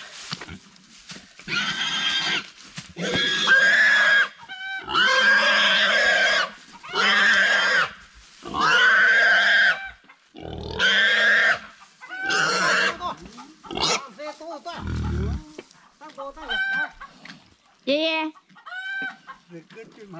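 A large pig squealing in about six long, loud screams one after another while it is being hauled and dragged by hand, then quieter after about thirteen seconds.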